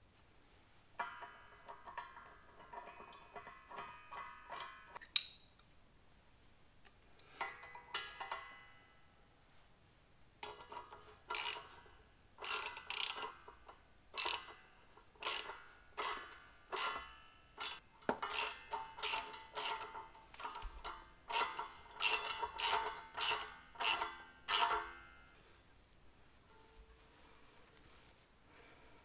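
Ratchet and wrench working bolts on a steel grinder stand built from square tubing and a truck brake drum: repeated short bursts of ratchet clicking and tool-on-steel clinks, with ringing from the steel parts. A first cluster early on, a pause, then a steady run of strokes at a bit more than one a second that stops a few seconds before the end.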